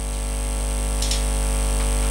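Steady electrical hum from the sound system, a low buzz with a stack of overtones, growing slowly louder.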